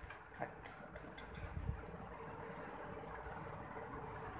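Faint handling noise of a plastic glue gun being turned over in the hand: a few light clicks in the first second and a low bump a little later, over a steady low room hum.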